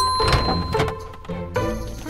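Cartoon elevator arrival chime: a single bell-like ding that rings on for about a second and a half as the elevator doors slide open, with a few thunks, over background music.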